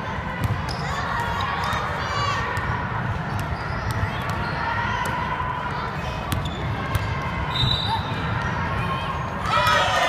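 A basketball bouncing on a hardwood gym floor, sharp knocks scattered over a steady, echoing hall noise of players moving and faint distant voices.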